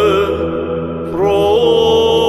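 Orthodox church chant: voices singing a slow melody over a steady low held drone note. One phrase fades a little and the next begins about a second in with a rising slide.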